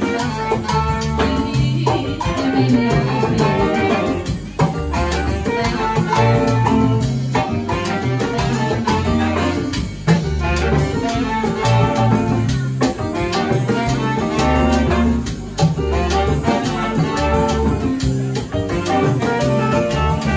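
A live salsa band playing: a pulsing bass-guitar line under saxophone and trumpet, electric guitar, keyboard, drums and congas.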